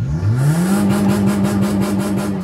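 Fiat Fiorino's engine revved hard while the car stands still, heard from inside the cabin: the pitch climbs quickly in the first half second and is held high and steady.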